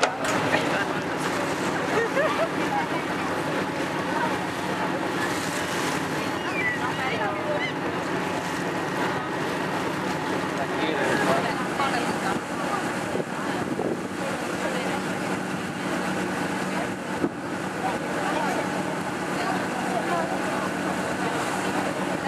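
Passenger ferry's engine running with a steady drone, mixed with wind on the microphone and water rushing past the hull, under the chatter of passengers on deck.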